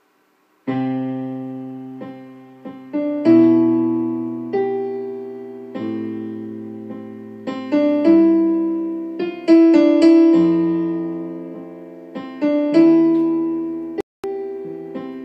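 Digital stage piano playing slow chords, a low bass note under each, starting about a second in; each chord sounds sharply and fades before the next is struck.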